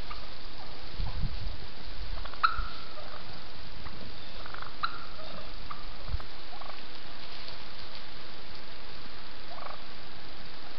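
Wild turkeys in a flock giving short, scattered calls, a few seconds apart, over a steady background hiss.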